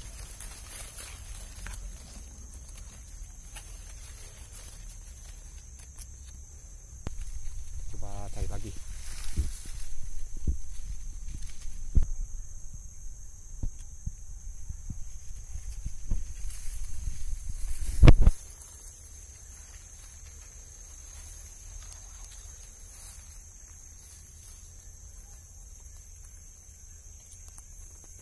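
Footsteps and rustling through dry leaf litter and undergrowth, with scattered cracks and handling knocks. This runs from about a quarter of the way in until a loud knock a little past the middle, then stops. Under it, forest insects keep up a steady high-pitched buzz.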